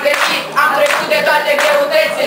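A mixed group of teenage voices singing together, holding a note, with hand clapping heard along with the singing.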